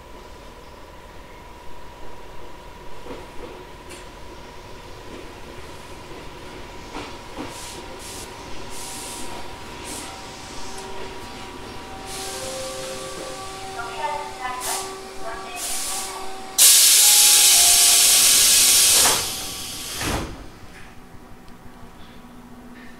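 Tobu 800-series electric railcar standing at a station, with a faint steady tone from its equipment. About two-thirds of the way in, a sudden loud burst of compressed-air hiss lasts about two and a half seconds and dies away, followed by a single thump: the pneumatic door engines closing the doors just before departure.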